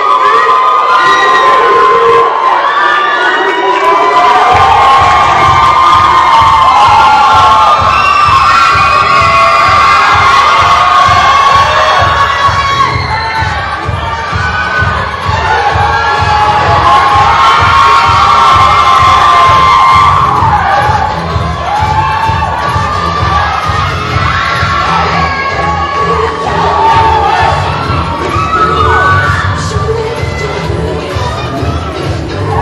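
Audience screaming and cheering with high-pitched shouts over loud dance music, whose steady bass beat comes in about four seconds in.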